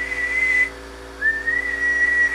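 A person whistling a steady high note into a CB radio microphone as a test tone to modulate the transmitter and amplifier: one short whistle that stops under a second in, then a longer one starting a little after a second in.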